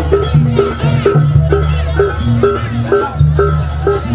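Live jaranan gamelan music played loud: a metal gong-chime strikes a steady beat of about two strokes a second over a higher repeated note and low gong tones.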